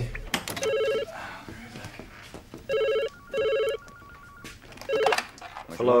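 Desk telephone ringing with an electronic trill: one ring about half a second in, a double ring about three seconds in, then a last brief ring near the end before it is answered.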